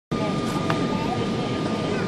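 Steady cabin noise inside a Boeing 777-200 on approach: an even rush of engine and airflow noise with a thin high tone held throughout, and faint voices underneath.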